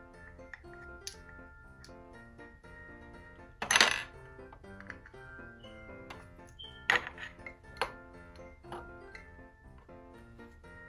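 Plastic stacking pegs clattering and clicking against each other and the table several times, the loudest about four seconds in, over Christmas background music.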